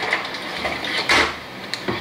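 Handling noise from a digital multimeter and its test leads being picked up and moved: a soft rustle about a second in and a few light clicks.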